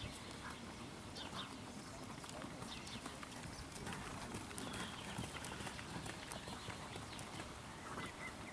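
Dressage horse trotting on sand arena footing: faint, soft hoofbeats over open-air background noise.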